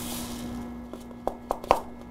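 Plastic pellets poured from a bottle into a plastic funnel: a brief soft rush, then a string of light, irregular clicks as pellets drop into the funnel. A faint steady hum sits underneath.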